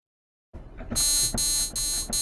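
iZotope BreakTweaker drum machine's synth generator sounding the 'Basic Inharmonic' wavetable: three short, bright, buzzy notes in quick succession, starting about a second in.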